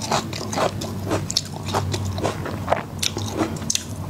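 Close-miked eating of whole garlic bulbs: a steady run of short, crisp chewing crunches, two or three a second.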